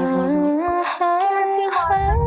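A woman's voice humming a slow melody: long held notes stepping up and down in pitch, with a brief break about a second in.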